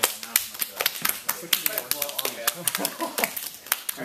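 Open hands slapping bare skin to pat competition tanning lotion onto a bodybuilder's body: a quick, irregular run of sharp slaps, several a second.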